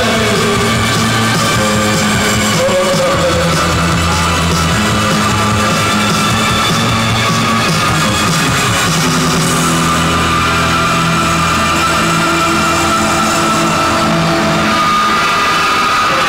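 A gothic post-punk band playing a song live, with long held bass and keyboard notes that change every few seconds under guitar, at a loud, steady level.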